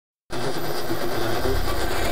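Static from an AM radio tuned to 1700 kHz, cutting in suddenly a moment after the start and running as a steady hiss, with faint wavering audio from a weak, distant station underneath.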